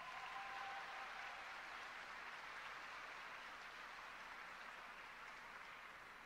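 Faint spectator applause right after an ice dance program's music ends, slowly dying away, with a brief high cheer at the very start.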